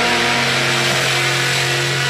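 Heavily distorted electric guitar sustaining a held chord in a live rock set, the notes ringing steadily.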